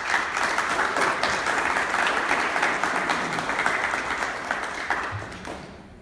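A small audience applauding, a dense patter of handclaps that starts abruptly, holds for about five seconds and dies away near the end.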